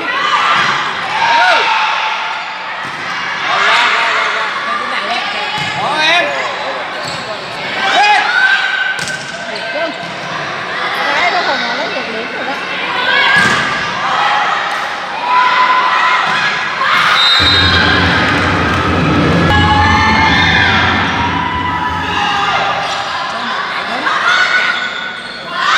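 Indoor volleyball play in a large echoing hall: the ball being struck again and again, shoes squeaking on the court floor, and players and spectators shouting. A steady low drone comes in for a few seconds past the middle.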